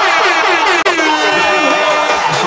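Air horn sound effect: a quick run of short blasts, then one held note a little under a second in, over the crowd's shouting.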